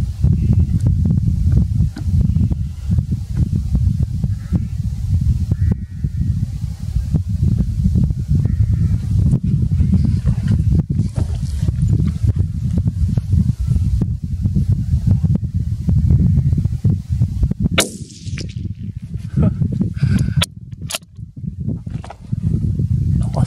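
Wind buffeting the microphone: a heavy, uneven low rumble. Near the end the rumble eases and a few sharp clicks or knocks sound.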